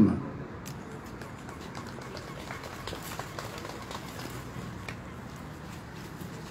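Low, steady outdoor background noise with faint, scattered clicks and taps.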